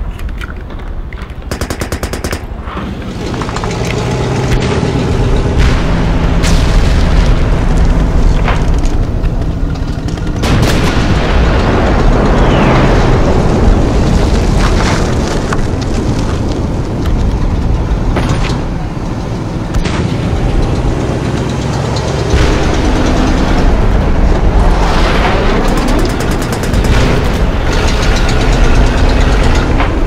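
Battle sound effects: steady gunfire and machine-gun fire mixed with explosions, dense and loud throughout, with a couple of sweeping whooshes about twelve and twenty-five seconds in.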